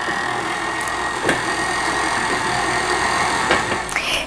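Electric stand mixer running steadily, a motor hum with a thin high whine as its beater works crumbly pie dough in a glass bowl, with one knock a little over a second in; the motor stops just before the end.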